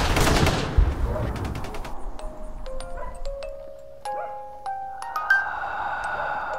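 Film soundtrack: a loud noisy wash dies away over the first two seconds, then sparse, short notes start one after another, each with a small click, and a soft held tone comes in near the end.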